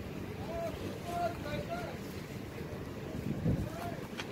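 Faint voices talking in the background over a low steady hum, with a low bump of wind on the microphone about three and a half seconds in.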